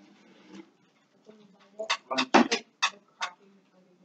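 A quick run of about six short, sharp clicks starting about two seconds in: the clicky sound of a Jolly Rancher hard candy.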